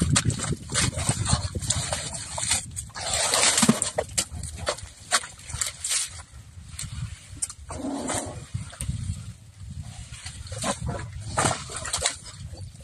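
A young elephant shifting and kneeling in a mud wallow: irregular scuffs and thuds of earth against its body, mixed with short animal noises.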